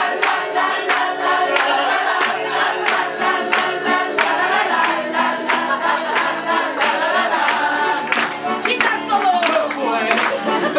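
A crowd singing along to an acoustic guitar, with steady rhythmic hand-clapping in time.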